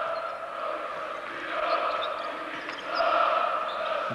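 Arena crowd chanting in unison from the stands, a sustained massed-voice sound that swells about a second and a half in and again, louder, around three seconds.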